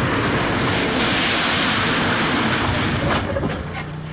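VW Golf on Continental tyres braking hard from 70 mph through a film of standing water: a steady rushing hiss of tyre spray and road noise that swells in the middle and dies away in the last second as the car slows.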